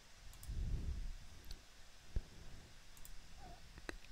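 A few faint computer mouse clicks, with one sharper click about two seconds in.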